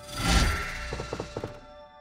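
A deep dramatic boom of a scene-transition effect swells at the cut and fades over about a second and a half, over sustained background music. About a second in come several quick knocks, like someone knocking on a door.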